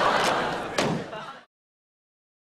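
A paper airsickness bag burst with a single sharp bang about a second in, over laughter. All sound stops abruptly half a second later.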